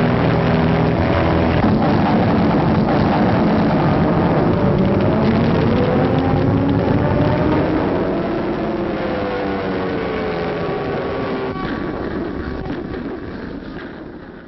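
Propeller aircraft engines droning in a dense, noisy mass, the engine pitch sliding slowly down in the middle as planes pass, with the dull sound of an old recording; it fades away over the last few seconds.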